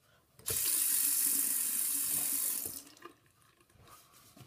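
Bathroom sink tap turned on, water running into the basin for about two seconds, then shut off, with a faint steady tone under the flow.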